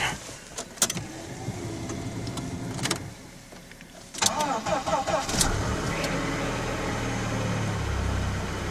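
Car engine started from cold in freezing weather: it catches about four seconds in, runs up briefly and settles into a steady idle. The engine turning over shows the water pump and block are not frozen.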